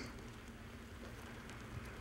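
Faint steady outdoor ambience of light rain: a soft hiss over a low rumble.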